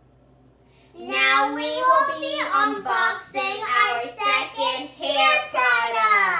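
A young girl's voice singing short, pitched phrases, starting about a second in and ending on a long falling note.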